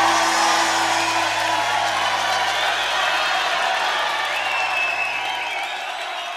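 The last held notes of a live music recording fading out under audience applause and cheering, with a few high whoops in the second half as the whole slowly dies down.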